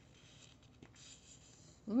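Faint rustling of paper book pages being handled and rubbed under the fingers, with a small click about a second in. A woman's voice starts right at the end.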